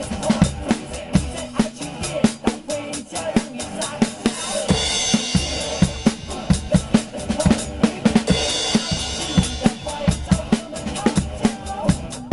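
Acoustic drum kit played in a steady groove, kick and snare driving the beat, with crash cymbal washes about five seconds in and again about eight and a half seconds in.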